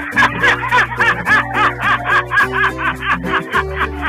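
A person laughing in rapid, evenly repeated bursts, about five a second, over background music with held bass notes.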